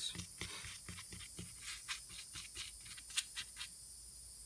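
Small paintbrush dabbing and scrubbing soapy liquid onto an aluminium engine crankcase: a run of irregular, small scratchy clicks from the bristles on the metal, dying away near the end.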